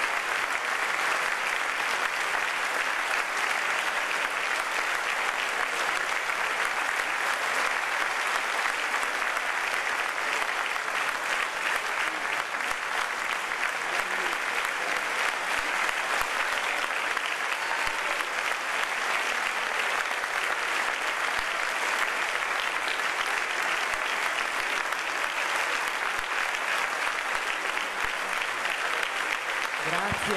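Large audience applauding at the end of a lecture: a long, even stretch of many hands clapping that holds steady without a break.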